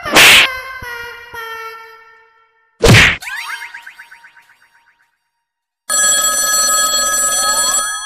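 Edited-in cartoon comedy sound effects: a loud whack with a ringing tail, a second whack about three seconds later followed by a fast rattling twang that fades out, then after a short silence a steady, loud bell-like ringing tone.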